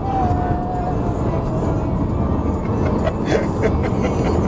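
Steady road and engine noise inside a car's cabin at highway speed, a dense low drone of tyres and motor. A faint thin held tone that sags slightly in pitch runs over the first two seconds, and brief voices or laughter come in near the end.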